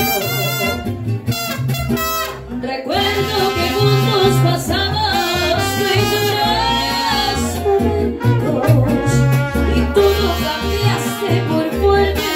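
A mariachi band playing a song live: a short trumpet phrase in the first seconds, then a singer's voice over the band with a steady bass line underneath.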